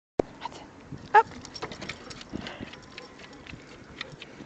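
Light clicks and taps of a dog moving on paving stones on a leash, with one short, loud pitched call about a second in.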